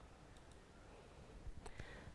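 Near silence: faint room tone with a few soft, brief clicks, two of them close together near the end.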